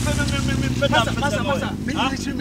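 A man talking, over the steady low drone of a motor vehicle's engine.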